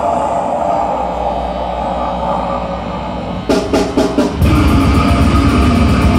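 Live grindcore band: a held, ringing guitar sound slowly dies away, then a few separate drum strikes about three and a half seconds in lead the full band back in at about four and a half seconds, with fast, driving drums.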